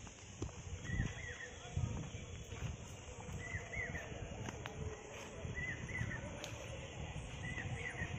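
A bird repeats a short chirping call about every two seconds over a steady high drone of insects, with irregular low thuds of footsteps and handling from the walking camera.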